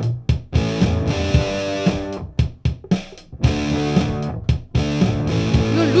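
Electric guitar played through a Nux MG-300 multi-effects processor, strumming held chords in short choppy phrases with sharp attacks between them, as a phrase is recorded into the unit's built-in looper.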